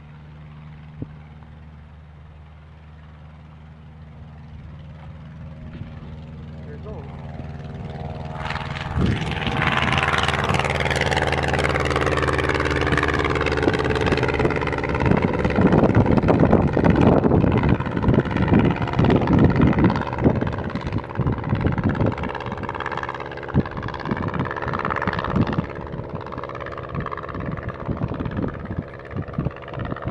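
A light aircraft's propeller engine running with a steady low drone. It grows louder from about four seconds in and is loud from about nine seconds on, with rough, gusty rushing noise over it through the second half.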